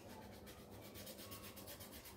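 Faint rubbing of a felt-tip marker being worked over the surface of a foam stamp to ink it.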